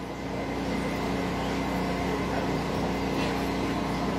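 A steady, low engine drone that grows a little louder over the first second and then holds.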